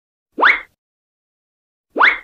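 A short electronic pop sound effect with a quick upward sweep in pitch. It repeats at an even pace about every second and a half, with dead silence between: once about half a second in, and again right at the end.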